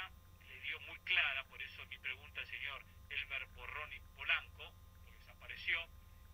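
Speech from a played-back radio interview, thin and telephone-like, over a steady low hum.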